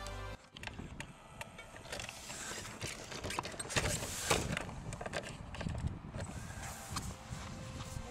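Background music cuts off about half a second in, leaving outdoor microphone noise: wind rumbling on the microphone and handling of a handheld camera, with scattered light knocks.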